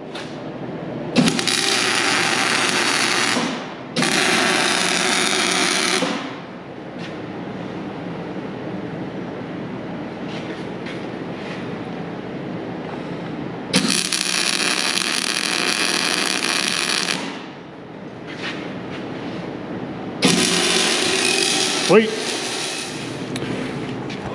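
Electric arc welding: four tack welds, each a hissing, crackling burst of two to three seconds that starts and stops abruptly, with a lower steady shop noise between them.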